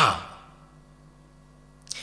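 A man's voice trailing off in a breathy sigh whose pitch falls steeply in the first half-second, then a pause with only a faint steady hum.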